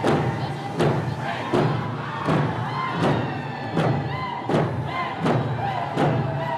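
Hand drums struck in a steady beat, a little more than one beat a second, with a group of voices singing a round dance song over them and a crowd's murmur beneath.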